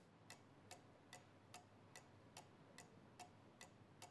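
Faint, even ticking of a clock, about two and a half ticks a second.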